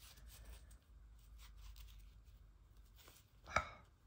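Faint rustling and scratching of embroidery thread being pulled and handled off a ball while a needle is rethreaded. A brief louder noise comes near the end.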